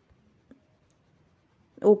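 Near silence with one faint, short tap about half a second in; a woman's voice starts speaking near the end.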